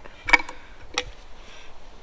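Spark plugs clicking against a stainless steel tray as they are handled: a quick pair of light clicks about a third of a second in, and a single click about a second in.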